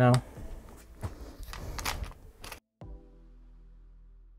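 A camera tripod being handled and set up: rustling with a few sharp clicks of its legs and fittings. Then the sound cuts out, and a low steady musical tone starts about three seconds in.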